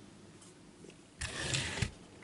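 Faint room tone for about a second, then a brief rustle with a few soft knocks lasting under a second: a plastic Transformers toy car being lifted off a cloth-covered surface.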